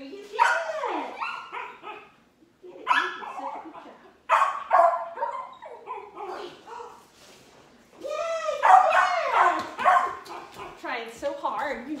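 A dog whining with high, sliding pitch in four bouts of one to four seconds, separated by short gaps.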